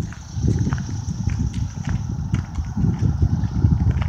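Wind buffeting a phone's microphone as an uneven low rumble, with footsteps on gravel as the person holding it walks.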